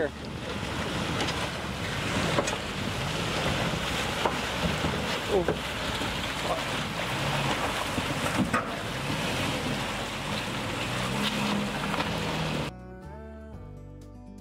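Toyota Tacoma pickup's engine revving up and down under load as it drives out of a shallow creek and up a soft, muddy bank, over water splashing, tyres on rock and gravel, and wind on the microphone. Near the end it cuts suddenly to guitar music.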